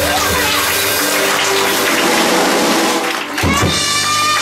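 Live jazz piano trio with bass guitar and drums playing the closing bars of a song. A noisy cymbal-like wash fills the middle, and about three and a half seconds in a new held chord with a sung note comes in.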